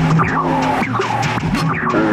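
Experimental electronic music: low held tones with quick swooping, squeal-like pitch glides and scattered sharp clicks.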